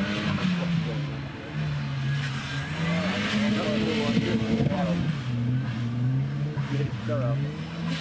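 Volvo 240 two-door's engine revving hard as the car spins its rear wheels on grass, the note surging up and dropping back about three times. The engine is loud and has a full-revving sound without a turbo whistle.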